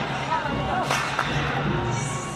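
Indoor basketball arena sound: voices and background music over a steady low hum, with one sharp smack a little under a second in.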